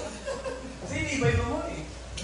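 People talking and chuckling.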